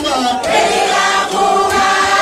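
A crowd of many voices singing a maskandi song together in long held notes.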